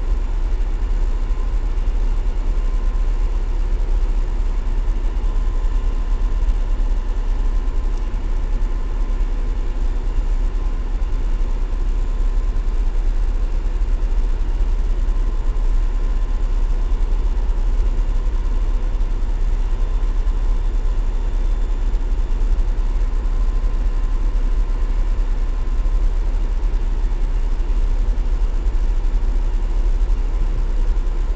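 Steady low rumble of a car ferry's engines, heard from inside a car on the vehicle deck, with a faint steady hum above it.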